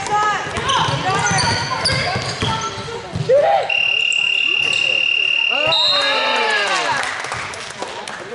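Basketball shoes squeaking on a hardwood gym floor and a basketball bouncing, with voices in the background. About halfway through, a single high steady tone sounds for about two seconds.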